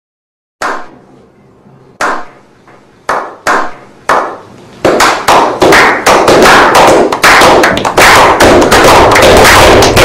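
A slow clap: single loud hand claps about a second apart, speeding up and joined by more hands until it becomes continuous applause.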